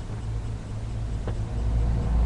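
A low rumble with a faint hiss over it, swelling about one and a half seconds in; a single faint click a little past the middle.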